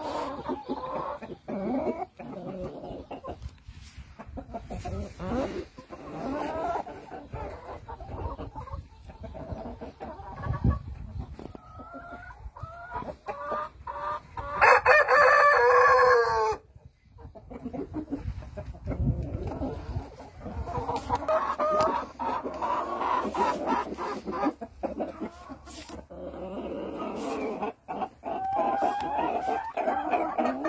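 A flock of black heavy Cochin chickens clucking and calling, with a rooster crowing loudly for about two seconds halfway through, cutting off sharply.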